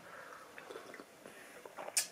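Faint sipping and swallowing of coffee from a mug.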